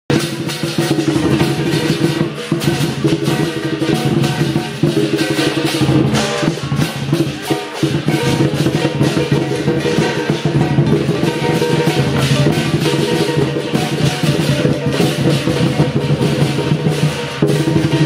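Lion dance percussion band playing: a large Chinese lion drum beaten fast and without a break, with cymbals clashing along.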